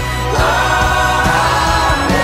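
Mixed choir of men's and women's voices singing a worship song, holding chords over a steady low beat. About half a second in, the voices slide up into a higher held note.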